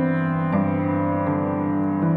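Background music: slow, sustained keyboard notes, a new note struck twice in these seconds.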